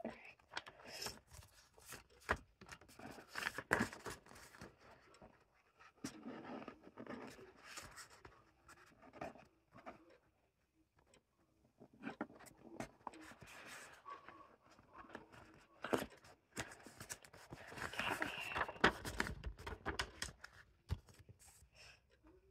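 Paper rustling and scraping as a greeting card and its envelope are handled, with scattered light taps and clicks; the longest, loudest rustle comes a few seconds before the end.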